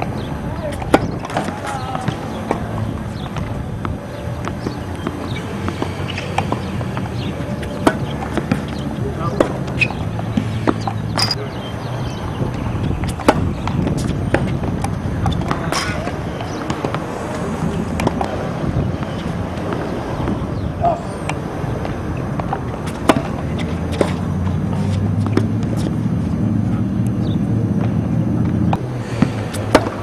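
Tennis balls struck by racquets and bouncing on a hard court, a sharp pop every second or two through a serve and rally, over a steady low rumble.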